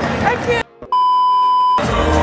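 Stadium crowd noise and voices that cut out abruptly about half a second in. After a brief silence comes a single steady electronic beep at one high pitch, lasting close to a second, and then the crowd noise returns.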